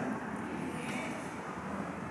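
A pause in speech: steady, low background room noise of a large hall, with no distinct sound.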